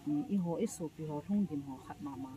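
A woman speaking emphatically, her voice rising and breaking into short phrases.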